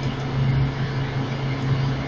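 Steady low hum with a faint hiss underneath, the background noise of the recording, with no speech over it.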